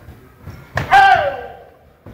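A sharp impact, then a loud shouted karate kiai that falls in pitch over about half a second.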